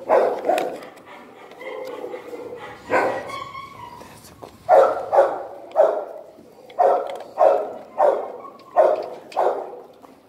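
Large pit bull-type dog barking repeatedly: a pair of barks, a pause with one more, then a steady run of barks about half a second apart through the second half.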